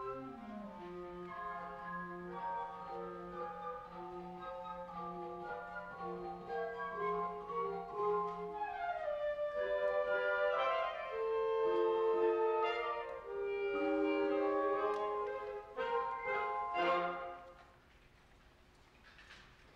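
A school orchestra of strings and winds playing a piece live, building in loudness with rising runs midway and ending on a final chord near the end.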